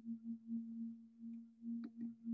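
A steady low hum, wavering in level about twice a second, with a faint click near the end.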